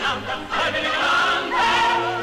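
Operetta-style choir singing with vibrato, growing louder and settling into long held notes in the second half.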